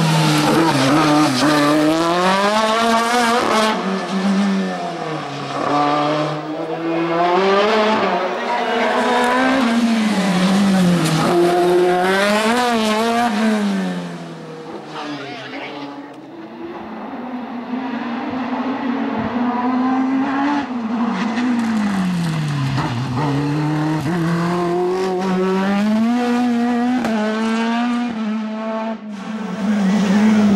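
Sports-prototype race car engine revving hard and dropping back again and again as the car accelerates and brakes through a cone slalom, its pitch repeatedly climbing and falling with the gear changes. The engine fades for a few seconds around the middle, then rises again.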